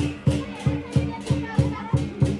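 Chinese lion dance percussion: a big drum and cymbals struck together in a steady, driving beat, about three strikes a second.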